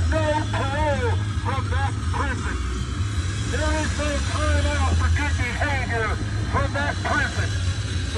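A voice speaking or shouting almost without a break, with a short lull about three seconds in, over a steady low rumble.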